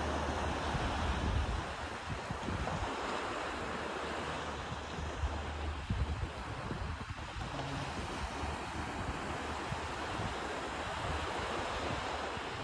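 Wind blowing over the microphone with a low rumble, over the steady wash of surf on the beach.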